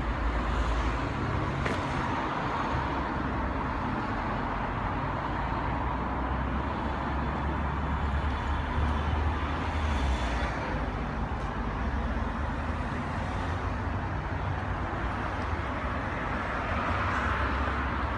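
Mercedes S63 AMG engine idling with a steady low hum.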